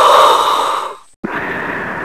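Darth Vader's respirator breathing sound effect: two hissing mechanical breaths. The first is louder and ends about a second in, and the second follows right after and slowly fades.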